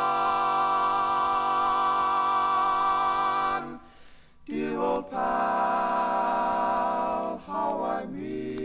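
Male barbershop quartet singing a cappella in close harmony, holding a long chord, breaking off briefly about halfway through, then holding another long chord.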